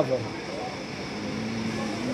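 A man's voice trails off, then a pause filled with outdoor background noise and a faint steady hum in the second half.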